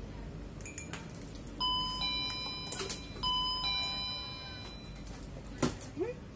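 Electronic door chime ringing twice, about a second and a half apart, each tone fading out: the signal that someone has arrived at the door. A sharp knock is heard near the end.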